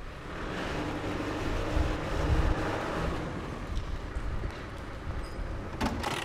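A vehicle engine running with a steady low rumble, growing a little louder about two seconds in.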